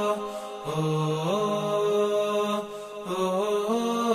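Slow chanted vocal music: long held notes that step up and down in pitch, with two brief breaks, about half a second in and near three seconds.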